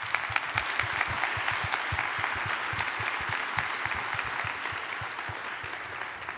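Audience applauding: dense, steady clapping from a large crowd that tapers off slightly near the end.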